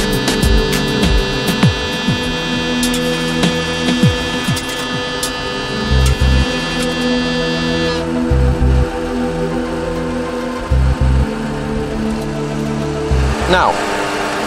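Boeing 737 simulator's engine fire warning bell ringing, cut off suddenly about eight seconds in, leaving the steady rumble of the simulated engines and cockpit.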